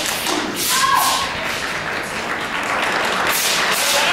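Thuds of a wushu nanquan (southern fist) performer's stamps and strikes on a carpeted competition floor. There are several in the first second and another about three seconds in, over the murmur of a large hall.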